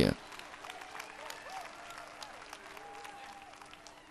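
Faint applause from a church congregation, with a few indistinct voices calling out, over a steady low hum.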